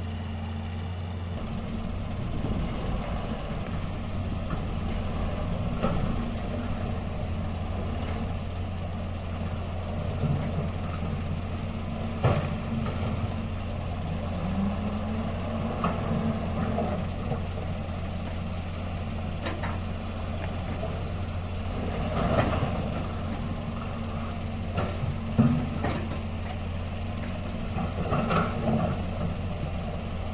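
Diesel engine of a loaded Mitsubishi Canter dump truck running steadily at low revs as it crawls through a shallow river, with a few short sharp knocks and a brief rise and fall in revs partway through.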